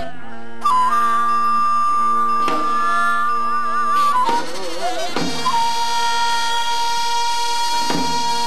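Korean traditional accompaniment for the seungmu (monk's dance): a wind instrument holds long high notes with a slow wavering vibrato over a low sustained tone, with a few sparse drum strokes.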